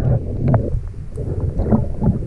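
Muffled underwater water noise from a camera microphone held below a lake's surface: a dense, loud low rumble with a few faint clicks.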